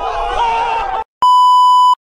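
A group of young people shouting and yelling, cut off abruptly about a second in. After a short silence comes a loud, steady, high test-tone beep lasting under a second, the tone that goes with a TV test-pattern screen.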